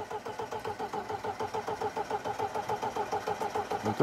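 A Lada's starter motor cranking the engine over without letting it fire, an evenly pulsing churn of the compression strokes that grows slightly louder.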